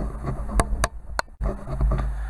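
Handling noise: a low rumble with three sharp clicks and knocks in the first half, as something on the modelling bench is moved around, with a brief dropout in the middle.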